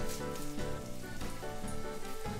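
Hot oil sizzling and crackling in a frying pan as batter fritters fry, under background music.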